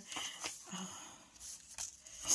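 Soft rustling and faint taps of paper pages being handled and turned in a handmade journal, with a short murmured "oh" about a second in.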